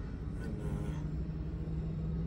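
Indoor fan motor of a Mitsubishi Electric Mr. Slim air conditioner running on a test bench, a steady low hum with a steady tone coming in about half a second in.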